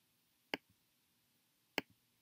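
Two sharp computer mouse clicks about a second and a quarter apart, each followed closely by a fainter click, paging through an on-screen catalog.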